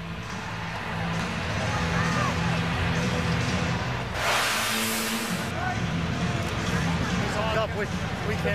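Stadium crowd after a goal: a steady murmur with scattered shouts over a low, steady musical drone, and a sudden burst of hiss lasting about a second, about four seconds in.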